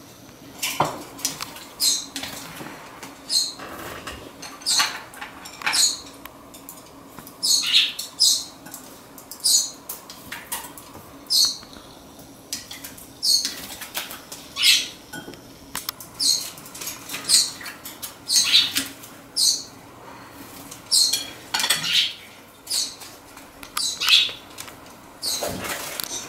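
Blue masked lovebird bathing in a perch-stand water bowl: repeated short bursts of splashing and wing-fluttering, about one every second or so.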